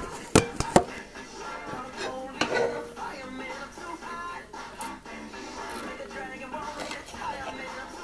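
Radio music playing in the background, with two sharp knocks in the first second.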